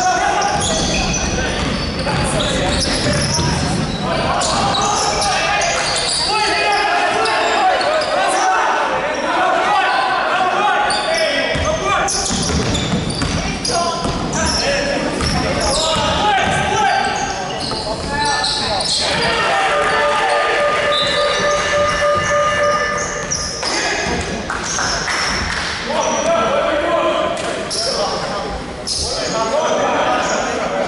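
A basketball game in a large echoing hall: the ball bouncing on the hardwood court throughout, with indistinct shouting from players and spectators. A held pitched tone sounds for a few seconds about two-thirds of the way through.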